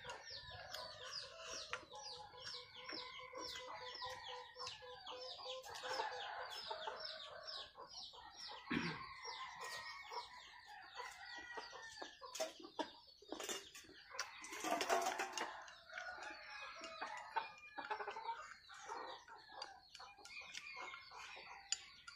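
Chickens clucking and calling, with a fast run of high, repeated chirps through the first half and a louder burst of sound about fifteen seconds in.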